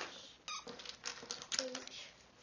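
Light clicks and shuffling of loose letter pieces being moved about on a table, with a child's brief high voice.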